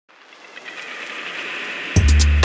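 A rising noise swell, a whoosh-like riser effect that grows steadily louder over about two seconds. Right at the end it breaks into electronic music with a heavy bass beat and drum hits.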